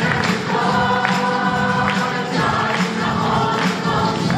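Church choir singing an upbeat worship hymn with accompaniment, sharp percussion strokes marking the beat about every second.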